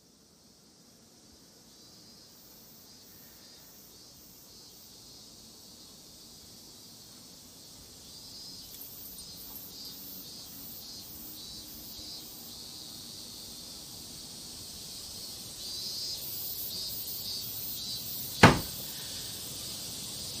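A steady, high-pitched insect drone with a faint pulsing, which grows slowly louder, and a single sharp click near the end.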